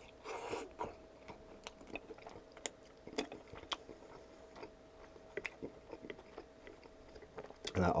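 Close-up mouth sounds of a man chewing a bite of sauced, breaded chicken cutlet: soft wet clicks and smacks scattered throughout, with a short, denser stretch of chewing about half a second in.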